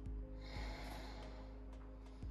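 Soft background music with steady held tones and light ticking percussion. A little under half a second in, a person exhales with a breathy rush that lasts about a second.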